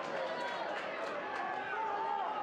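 Football stadium crowd: many voices shouting and calling over one another at a steady level, with a few sharp clicks.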